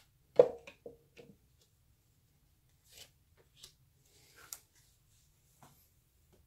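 Tarot cards being dealt from the deck and laid down on a cloth-covered table. A sharp tap about half a second in is followed by a few lighter ticks, then soft brushes and taps as cards slide into place.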